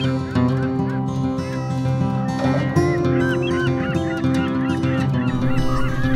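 Background music with long held notes, joined from about two and a half seconds in by a flock of birds giving many short, overlapping calls.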